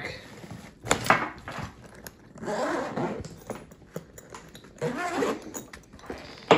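Zipper on the back compartment of a Veto Pro Pac Tech Pac tool backpack being pulled open in several strokes, with knocks and rustling as the nylon bag is handled.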